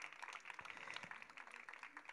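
Faint audience applause, a thin patter of many hands clapping.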